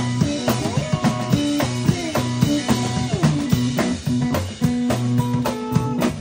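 Live blues band playing an instrumental passage: a guitar plays notes that bend up and down in pitch over a steady drum-kit beat.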